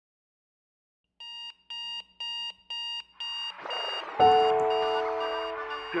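An electronic alarm clock beeping in an even pattern, about two high beeps a second, starting after about a second of silence. Music swells in over it and a sustained chord lands about four seconds in, louder than the beeps, which carry on faintly beneath.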